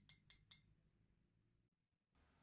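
Near silence, with three faint, evenly spaced clinks in the first half second: a metal fork tapping against a small glass dish as the beaten egg is scraped out.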